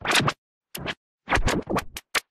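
DJ-style record scratching: about five short strokes with silent gaps between them.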